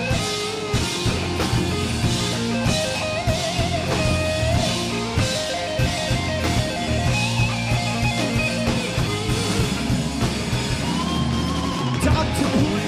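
Live rock band playing an instrumental passage: distorted electric guitars over bass and a drum kit, with a guitar line of bent, wavering notes.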